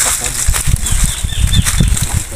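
Irregular low rumbling bumps from a handheld camera microphone jostled as it is carried on foot, with a few short high chirps from birds.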